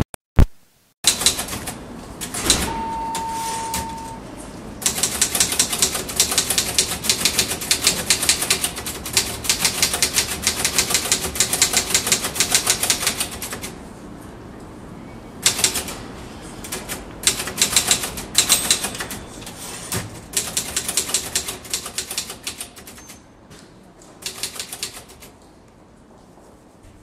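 Fast typing on a keyboard, the keys clicking rapidly in runs of several seconds broken by short pauses.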